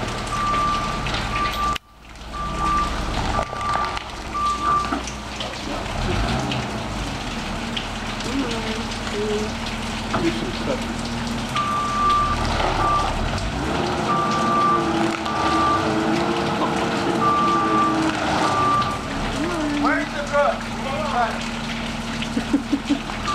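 Bobcat skid-steer loader's engine running with its reversing alarm beeping in runs of even, steady beeps as the machine backs up, starting and stopping several times.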